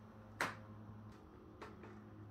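A single sharp click about half a second in, then two faint ticks, over a low steady hum.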